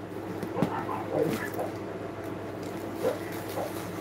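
Dogs barking: a few short, scattered barks, fainter than the talking around them.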